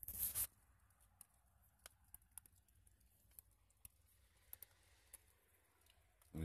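Near silence: a short hiss in the first half second, then only faint scattered clicks.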